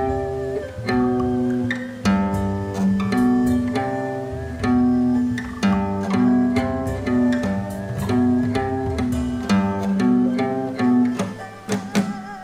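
Guitar riff played one plucked note at a time, the pitch stepping back and forth between a few low notes in a steady repeating pattern, about two notes a second.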